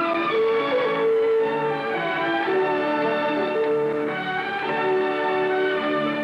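Orchestral background score with a violin melody over strings, moving in held notes.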